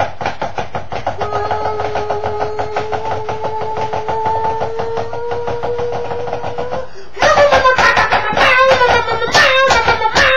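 A man singing a homemade song over a fast, even percussive beat: he holds one long, slightly rising note for several seconds, then about seven seconds in breaks into louder, more varied singing.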